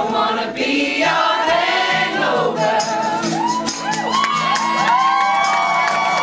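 Acoustic guitar strummed under several voices singing together close by. From about halfway in, many voices slide up into overlapping, long-held whoops.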